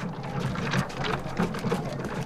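Period street bustle: a rapid, irregular clatter of footsteps and wheels on a paved street.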